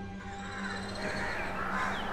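Birds calling, growing slightly louder, over a soft background music bed.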